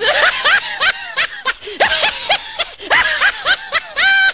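High-pitched laughter: a long run of quick, short bursts, each rising and falling in pitch, several a second.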